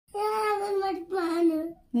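A young girl wailing in a tantrum: two long, drawn-out cries, each just under a second, held at a steady pitch.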